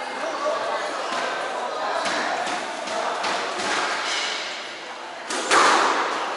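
A squash ball struck hard, one loud sharp smack about five and a half seconds in that rings around the walled court, with a few lighter knocks before it. Voices chatter in the background.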